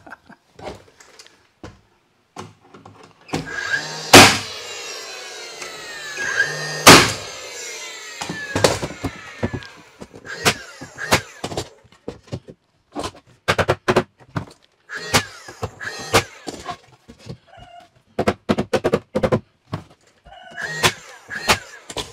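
Pine tongue-and-groove boarding being fitted by hand: two loud wooden knocks a few seconds apart with a long rubbing scrape of board on board around them, then a run of lighter knocks and taps as boards are set into place.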